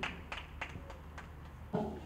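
Light, sparse hand clapping, about three claps a second, as a speaker is invited forward.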